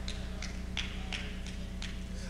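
A quiet pause filled by a steady low hum, with a few faint, short clicks scattered through it.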